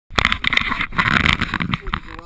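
Loud rubbing and knocking on the microphone, starting suddenly and falling away near the end: the camera being handled.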